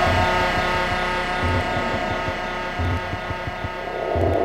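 Electronic music played on modular synthesizers: a sustained drone of many held tones over a low pulse that repeats about every second and a half.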